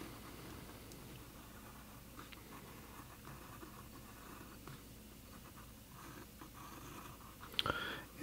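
Faint scratching of a graphite pencil drawing a curved outline on textured watercolor paper, with soft uneven strokes.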